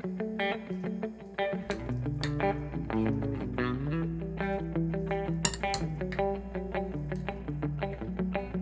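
Background music led by plucked guitar notes in a steady rhythm, with a low bass layer coming in about two seconds in.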